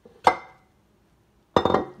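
Dishes being handled at a kitchen sink. One sharp clink with a short ring comes about a quarter second in, then a louder burst of several quick clattering knocks near the end.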